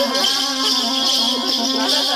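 Warli tribal dance music: a steady drone note under a wavering melody, with a constant rattling hiss of rattles.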